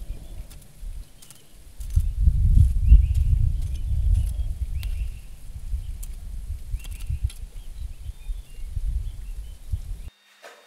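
Outdoor rural ambience dominated by a low, uneven rumble, most likely wind buffeting the microphone, which swells about two seconds in, with faint bird chirps and scattered light clicks over it.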